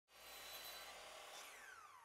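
Near silence: a faint hiss, with a faint tone gliding down in pitch over the last half second.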